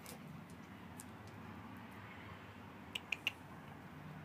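A dog's claws clicking on a concrete floor: a few faint clicks, then three quick sharp clicks about three seconds in, over a faint low hum.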